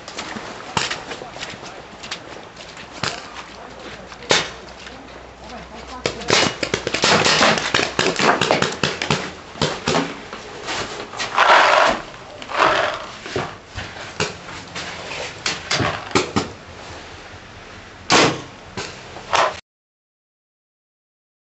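Paintball markers firing: repeated sharp pops, singly and in quick runs, mixed with players shouting. The sound cuts off abruptly near the end.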